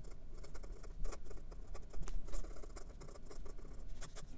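Flexible 14-karat gold nib of a 1925 Wahl Eversharp 641A fountain pen scratching across notepad paper as it writes cursive, in quick, irregular strokes.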